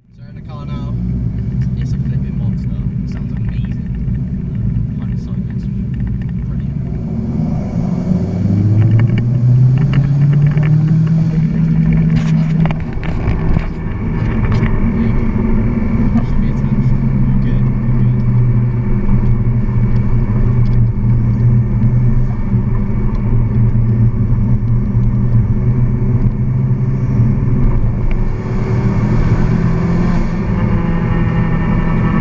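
Modified Skoda Octavia vRS Mk1's turbocharged 1.8-litre four-cylinder, fitted with a K03S hybrid turbo and a three-inch straight-through exhaust, heard from inside the cabin while driving. The engine pitch rises under acceleration from about eight seconds in, there are a few sharp clicks around twelve seconds, and then it holds a steady tone.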